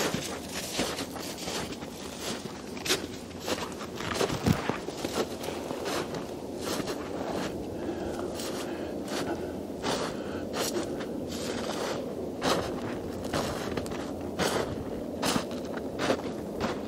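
Footsteps crunching through snow at a walking pace, about one step a second, as a firewood stack is paced off to measure its length.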